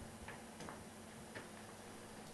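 Faint, irregular light clicks and taps over quiet room tone with a low steady hum.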